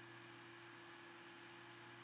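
Near silence: room tone with a faint steady hum.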